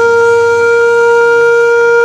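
A flute holds one long, steady note over a low sustained drone in a slow, sad instrumental.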